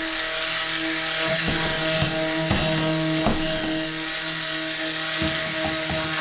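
Stick blender motor running at a steady pitch with its blade head submerged, mixing lye solution into green cold-process soap batter. A few light knocks come through over the hum.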